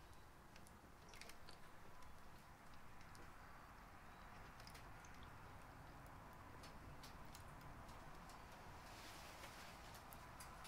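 Near silence: faint room tone with a few soft scattered ticks.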